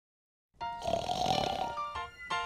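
Short intro music over an animated title card, starting about half a second in after silence.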